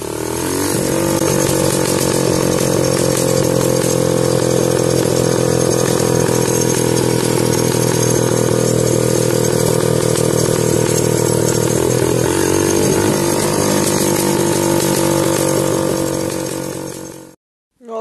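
Small dirt bike engine running at a steady speed while riding, with wind rushing over the microphone. The pitch holds nearly level throughout, with no revving, and the sound cuts off suddenly just before the end.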